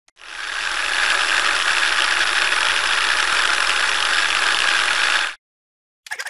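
Film projector sound effect: a rapid, steady mechanical clatter that fades in over the first second and cuts off abruptly a little after five seconds.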